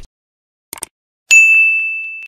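A brief cluster of clicks, then a single bright bell ding that rings on and slowly fades. This is the click-and-notification-bell sound effect of a subscribe-button animation.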